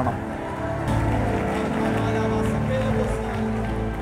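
Background music of sustained held chords under the preaching, the chord changing about a second in as a low bass note enters.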